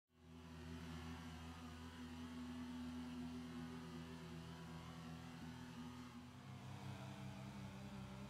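Faint, steady low drone of a few held tones, shifting slightly about six seconds in.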